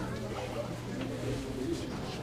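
Low, indistinct voices of people talking quietly in the background, over a steady low hum.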